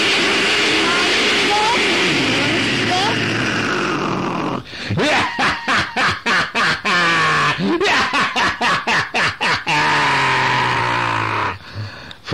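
A man's mouth-made sound effects: a long, loud rushing hiss, then a fast run of pulsing, laugh-like sounds, ending in a drawn-out voiced sound.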